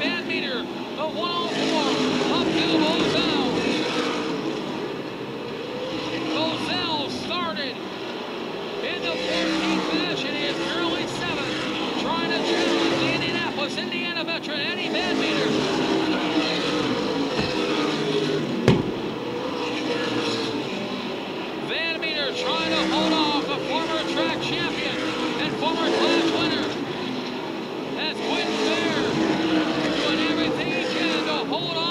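A pack of V8 super late model stock cars racing on an asphalt oval, engine notes rising and falling in waves as cars pass through the turns and down the straights. A single sharp crack stands out about two-thirds of the way through.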